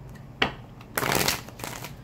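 A deck of tarot cards shuffled by hand: a short snap about half a second in, then a brief rustling riffle of cards about a second in.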